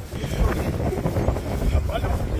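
Wind buffeting the phone microphone, a steady low rumble, with faint muffled men's voices in the background and a voice starting up near the end.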